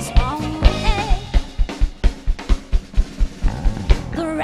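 A live band playing an upbeat swing-soul number: a woman's singing in the first second or so, then the drum kit comes to the fore with a fast, steady beat of bass drum and snare, about four strikes a second, under bass and guitar.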